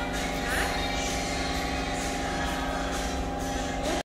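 A steady mechanical hum of unchanging pitch, with a faint hiss that comes and goes about once a second.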